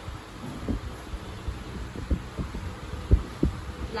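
A pug making several short, low, muffled woofs when told to bark on command, the loudest about three seconds in.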